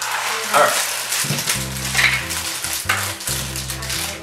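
Foil blind-bag wrappers crinkling and rustling as they are handled and opened, over background music with steady low notes.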